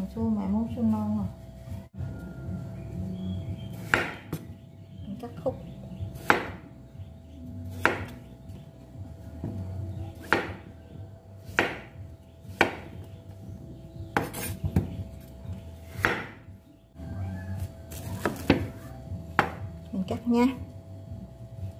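Large kitchen knife cutting a peeled young chayote into chunks on a wooden cutting board. The blade knocks sharply on the board about ten times, roughly once every second or two, over a low steady hum.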